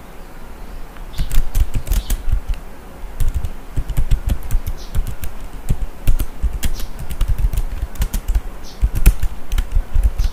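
Typing on a computer keyboard: quick, irregular key clicks, beginning about a second in.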